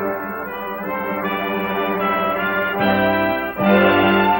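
Instrumental introduction of the anime's opening theme song: sustained chords that change every second or so, with a brief dip a little past three and a half seconds before a louder passage.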